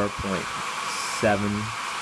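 Converted Conair hair dryer running steadily, its fan blowing air over the heating element, which is serving as a resistive load of roughly 650 watts. Under the rush of air sits a faint steady whine.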